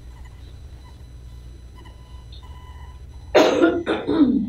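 A person coughing, two loud coughs close together near the end, over a quiet steady room hum.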